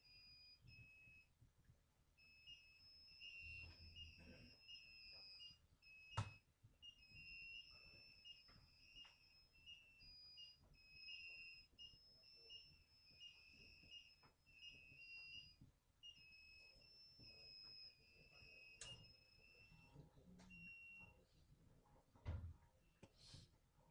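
Near silence: faint room tone with a thin, high-pitched warbling tone that comes and goes, and single clicks about six seconds in and again near nineteen seconds.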